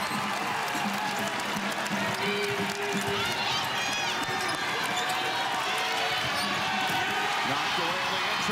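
A basketball dribbled on a hardwood court, with short high sneaker squeaks and the murmur of an arena crowd.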